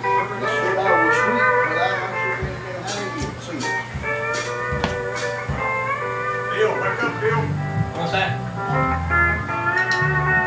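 Live country band playing an instrumental passage led by a pedal steel guitar, with long held notes that slide in pitch, over guitar. A bass line comes in about two thirds of the way through.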